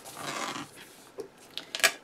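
Paper handling on a planner: a hand rubs a sticker down onto the page, with soft rustling, then a few light paper ticks near the end.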